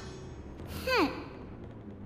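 A cartoon character's dejected sigh: one falling "hmm" about a second in.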